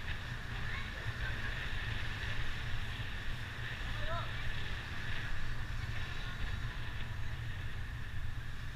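Wind buffeting the microphone and the low rumble of a motorbike riding along a street, steady throughout. A couple of faint, brief chirps cut through, about a second in and about four seconds in.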